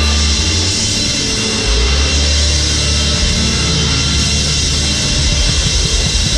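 Live rock band playing loud on stage, heard close up from the drum kit: drums and cymbals over long held low bass notes.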